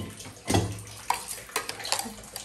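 A steel spoon stirring watery mint-chilli paste in a steel mixer jar, sloshing the liquid with several sharp clinks of spoon on metal about half a second apart.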